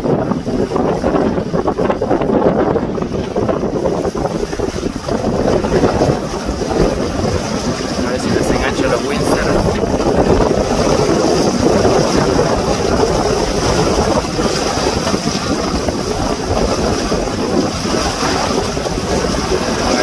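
Strong wind buffeting the microphone together with choppy water rushing and splashing along a small sailboat's hull under sail, a steady loud noise throughout.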